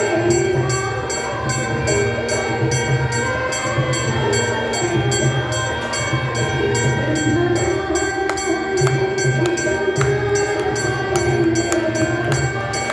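Devotional aarti hymn sung by a group, with percussion keeping a fast, steady beat under the singing.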